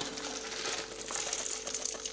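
Roasted dried red chillies and grated coconut tipped and scraped off a steel plate into a mixer-grinder jar: a dry, crackly rattle with light scraping.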